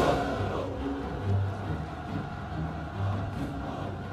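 Low, slow dramatic background score: deep held notes that shift about once a second, after a louder wash of sound dies away at the very start.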